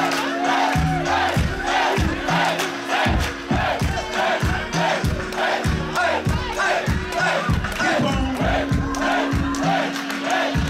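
Concert crowd shouting over a hip-hop beat, many voices at once above a kick drum hitting about twice a second and a repeating bass line.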